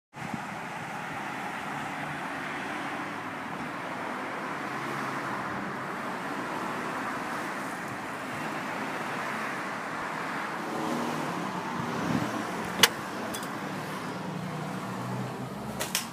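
Steady street traffic noise from passing cars, with a single sharp click or knock about three-quarters of the way through.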